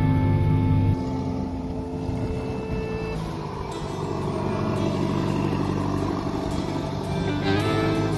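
Farm machinery running with music over it: a forage harvester working until about a second in, then the engine of a small Allis-Chalmers tractor running as it drives.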